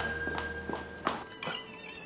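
Soft background music with a few footsteps knocking on a hard floor as people walk away.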